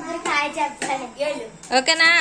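Children's high-pitched voices talking and calling out over one another, ending in a loud call that falls in pitch. A few sharp hand claps come in between.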